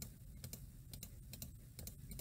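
A scattering of faint, irregular clicks from a computer keyboard being typed on.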